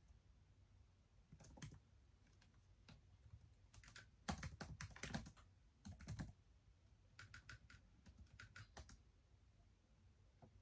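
Typing on a laptop keyboard: faint keystrokes in short bursts with pauses between, the busiest and loudest run about four to five seconds in.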